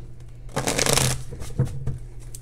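A deck of oracle cards being shuffled by hand: a short rush of card noise about half a second in, then a soft tap as the cards settle.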